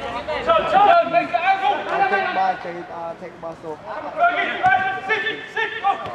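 Men's voices calling out to each other during play in a five-a-side football game, with no words coming through clearly.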